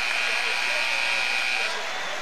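Arena horn at the basketball scorer's table sounding one steady high-pitched tone that cuts off near the end, signalling a substitution, over crowd noise.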